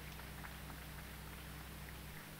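Quiet background with a steady low hum and a few faint, scattered small sounds.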